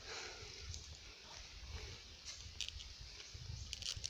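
Faint rustling and crumbling of soil and dry leaves as a wild yam tuber is pulled out of its hole, with a few soft thuds and small ticks.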